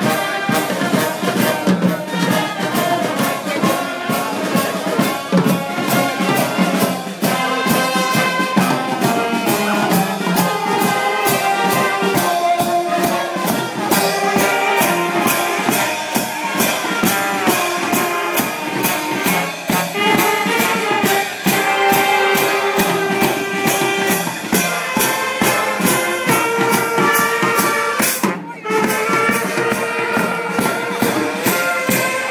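A children's wind band of trumpets, trombones, saxophones and clarinets playing a tune over snare drums, bass drum and cymbals, with a steady drum beat. The music breaks off briefly a little before the end, then goes on.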